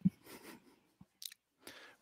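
Faint soft rustling noises with a single small click about a second in.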